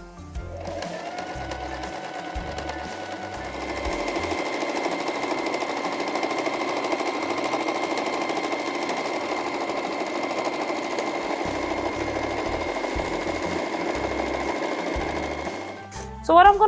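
Electric sewing machine running a straight stitch along a fabric seam, a steady whir with a thin whine that gets louder about three seconds in and stops just before the end.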